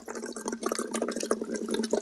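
Straw phonation into water: a steady hum blown through a wide silicone straw into a part-filled bottle, bubbling all the while. It is a voice-relaxation and warm-up exercise that lowers and relaxes the larynx.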